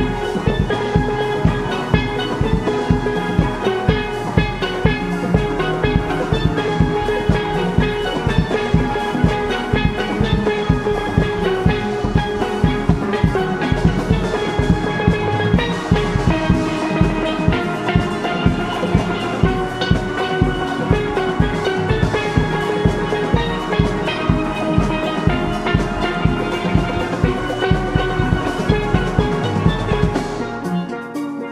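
Steel orchestra playing: many steel pans ringing out melody and chords over a steady drum-kit beat.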